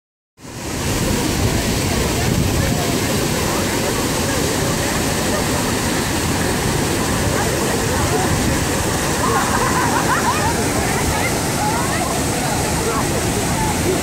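Steady rush of the Krka waterfalls' cascades, with the chatter and calls of many bathers mixed in. A few voices stand out around nine to eleven seconds in.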